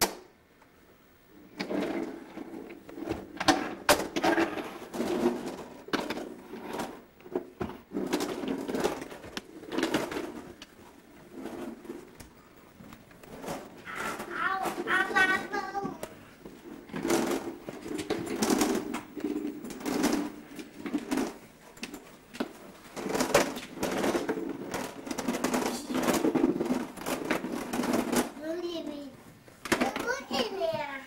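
Indistinct, muffled voices and a toddler's babble, with repeated knocks and clatters throughout. A high, wavering vocal sound comes about halfway through.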